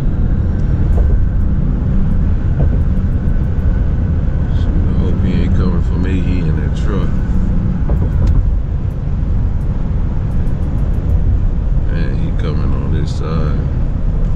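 Steady low road and engine rumble inside the cab of a pickup truck while it is being driven, with a faint voice coming and going over it.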